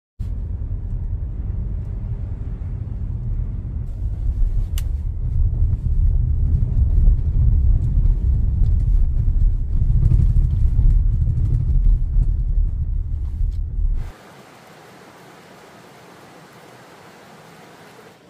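Low, steady rumble of a car driving on a wet road, heard from inside the cabin. About fourteen seconds in it cuts off suddenly to a quieter, even rush of a shallow rocky river.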